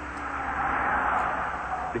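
A BMW sedan sliding across a wet skid pad: tyres hissing through standing water, swelling to a peak about a second in and then easing, with the engine running underneath.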